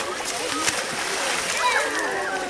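Pond water splashing and churning as a group of crocodiles thrash and lunge for food. People's voices can be heard over it, most clearly near the end.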